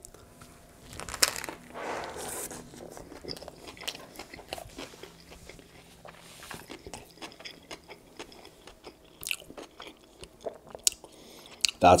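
Biting into a toasted double-meat Subway BMT sub layered with salt-and-vinegar kettle chips: a loud crunch about a second in, then close-up crunching and chewing. The chewing goes on as a run of small wet mouth clicks.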